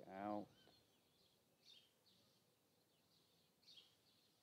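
Faint, short, high bird chirps, one about two seconds in and another near the end, over near-silent quiet.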